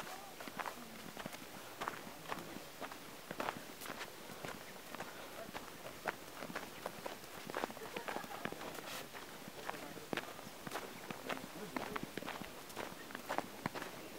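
Footsteps in snow: a steady run of irregular steps through deep snow, with faint voices in the background.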